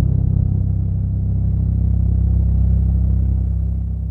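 Deep, steady rumble of a cinematic logo-reveal sound effect, the drawn-out tail of a boom that starts to die away near the end.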